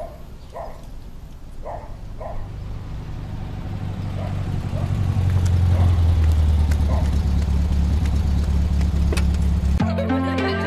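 A low droning rumble swells louder over about five seconds and then holds steady. A few short, faint chirps sound above it in the first three seconds, and music starts right at the end.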